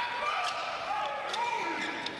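Indoor volleyball rally sounds: the ball is struck sharply about half a second in and again a little before the middle. Players' shoes squeak on the court floor between the hits.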